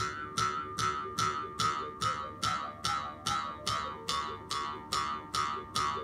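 Ainu mukkuri, a bamboo mouth harp, sounded by steady jerks of its string, about two and a half plucks a second, each ringing out over a continuous buzzing drone.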